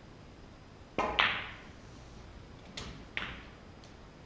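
Snooker shot: the cue tip strikes the cue ball about a second in, and a fifth of a second later the cue ball hits a red with a loud, ringing click. Two more clicks of balls knocking together follow near the end, the second louder, with a faint tick just after.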